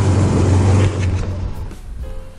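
Karakat's engine running steadily under load with a deep drone as the vehicle drives a rutted dirt road; about a second in it drops off sharply and fades.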